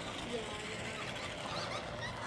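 Faint, distant talking over a steady outdoor background hiss.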